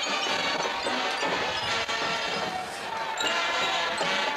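Marching band playing, brass over a drumline, with a short dip in volume just before three seconds in.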